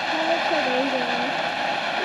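A Miracle Fireworks 'Ajax the Anteater' ground fountain spraying sparks in two fanned jets, with a steady, quiet hiss.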